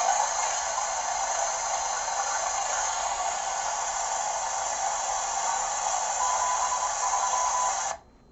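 Malahit SDR receiver's small speaker hissing with static on an empty CB channel 19, a thin steady hiss with a faint steady tone coming through briefly shortly before the end. The hiss cuts off suddenly at the end as the radio is switched off.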